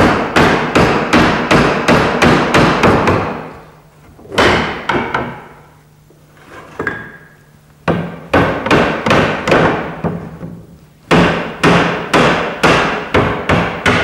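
Wooden mallet striking the frame of an old maple dining chair to knock its glued joints apart. It comes in three runs of quick blows, about three a second, with a single blow and a quieter pause between the first and second runs.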